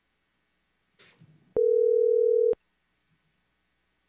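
A brief faint click, then a single steady telephone tone lasting about a second that cuts off sharply, from a phone line being brought onto the courtroom speaker.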